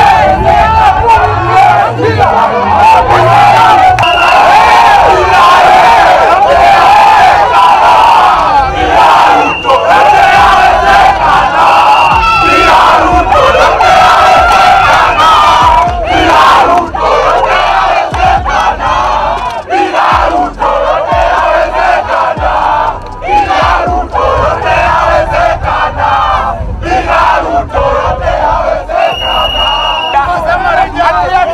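A large crowd of protesters shouting and yelling together, loud and continuous, with many voices overlapping.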